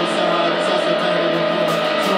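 Live rock band playing, with electric guitar ringing out over sustained chords and the band's full, even sound.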